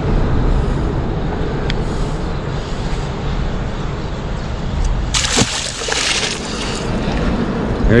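A blue catfish splashing and sloshing in the river water as it is let go about five seconds in, over a steady low background rumble.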